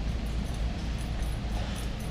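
Steady low background hum of a large store's room noise, with no distinct event standing out.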